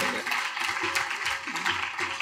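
Audience reacting in a large hall: a dense wash of crowd noise with many quick, scattered claps.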